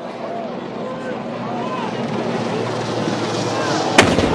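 Crowd chatter over a background noise that grows steadily louder, then a single sharp blast of a howitzer firing a blank round in a 21-gun salute at the very end.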